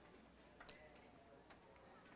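Near silence: room tone with a few faint ticks, two close together early and one more about a second later.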